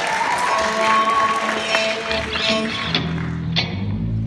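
Amplified electric guitars sounding a few loose held notes, with lower notes joining about halfway through. A single sharp knock comes near the end.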